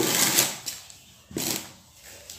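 A chair being scraped across a concrete floor, twice: a longer scrape at the start and a shorter one a little over a second in.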